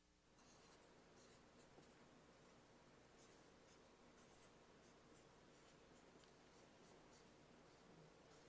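Faint marker strokes on a whiteboard: short, irregular scratchy strokes of the pen, over a quiet room hiss.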